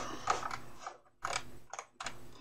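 Faint mechanical handling noises at a desk: a few short, irregular bouts of clicking and scraping, with a gap of silence about a second in.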